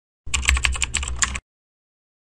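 A rapid run of computer keyboard typing clicks, lasting about a second and stopping abruptly.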